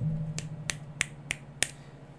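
Five finger snaps about three a second, close in front of a Blue Yeti Nano USB condenser microphone in omnidirectional mode, over a low steady hum. They are loud enough to clip the recording.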